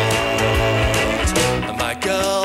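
Guitar rock band playing live in a studio session, full band with a voice over guitars. The loudness dips briefly just before the end.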